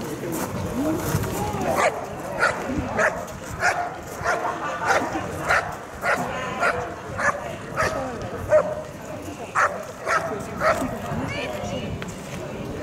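Shepherd-type working dog barking steadily and repeatedly, about one or two barks a second, while it holds a protection helper in a bark-and-hold.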